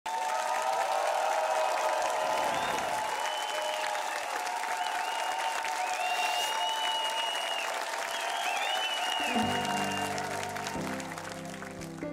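Studio audience applauding and cheering, with some high whistles. About nine seconds in, a keyboard starts playing sustained chords as the song's intro.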